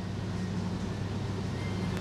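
A steady low hum over a constant background hiss, with no speech.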